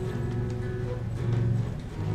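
Live acoustic cover of a pop love song: strummed acoustic guitar with held sung notes, in a reverberant hall.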